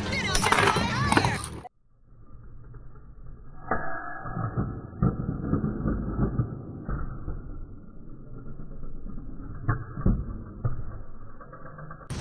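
Briefly an anime voice over music, which cuts off. Then a slowed-down, muffled recording of two Beyblade spinning tops whirring around a plastic stadium, with several sharp clacks as they collide.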